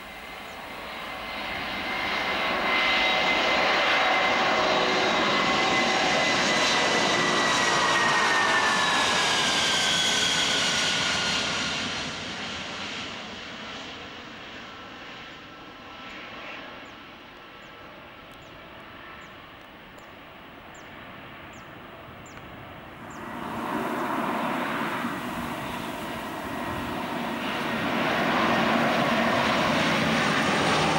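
Antonov An-124's four turbofan engines at high power as the freighter passes low, a loud steady roar with a whine that falls in pitch as it goes by, then dies away. About 23 seconds in the sound switches abruptly to a Lockheed C-130 Hercules' four turboprops running loud in a low pass.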